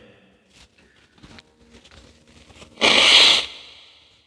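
A man's single loud, sharp blast of breath through the nose into a tissue, a sneeze or a nose-blow, about three seconds in, fading quickly.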